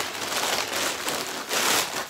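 Thin plastic bag crinkling and rustling as it is handled and opened, a continuous crackle that grows louder about one and a half seconds in.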